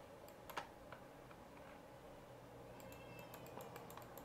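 Faint clicks of a computer mouse: a few single clicks early on, then a quicker run of clicks near the end, over near-silent room tone.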